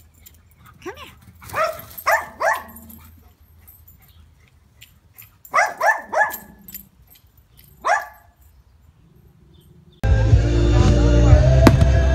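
A Labrador retriever barking: a few short barks in quick succession about two seconds in, another run around six seconds, and a single bark near eight seconds. About ten seconds in, the sound switches abruptly to loud music with the cracks of fireworks.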